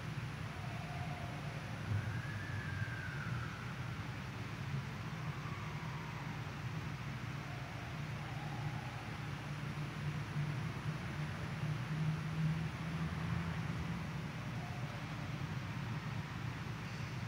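Room noise in a large church: a steady low hum and hiss, with a few faint, short tones in the background.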